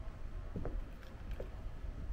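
Outdoor wind rumbling on the microphone, with faint water lapping under the boat lift and a few brief sounds about half a second and a second and a half in.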